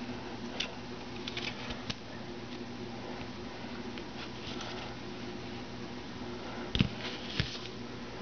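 Light clicks and rustles from a steel shaft with a coiled spring and lever being handled on a tabletop, over a steady faint hum. A louder knock comes about seven seconds in, with a smaller one just after.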